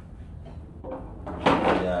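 A single sharp knock about one and a half seconds in, over a low steady hum, followed at once by a voice.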